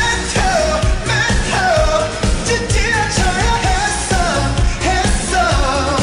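Korean pop song: a sung vocal line over a backing track with a steady bass beat.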